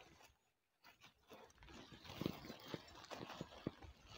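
Faint, scattered rustling and crackling of hands working dry leaves, stems and loose soil around the base of a transplanted seedling, starting about a second in after a near-silent moment.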